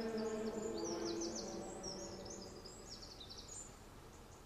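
The held notes of a choral chant fade out over the first couple of seconds. Small songbirds chirp in quick high phrases until near the end.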